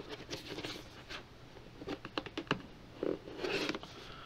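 Scissors scraping and cutting along the edge of a cardboard box, an irregular run of short scratches and clicks, busiest about three seconds in.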